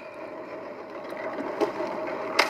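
Outboard motor of an inflatable boat running steadily, with wind and water noise.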